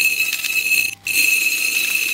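Dry rice grains poured into a bowl: a continuous patter of falling grains with a steady, high ringing tone from the bowl. It breaks off briefly about a second in, then carries on.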